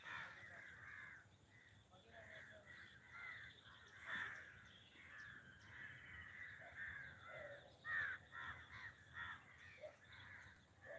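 Crows cawing again and again, many short calls overlapping, the loudest about four and eight seconds in, over a steady high-pitched hiss.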